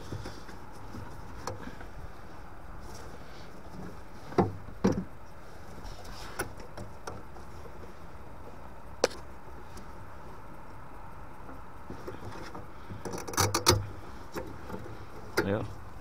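Gloved hands working a small plastic sensor connector and clip loose inside a boiler: a few scattered clicks and light knocks, with a quick cluster of them near the end.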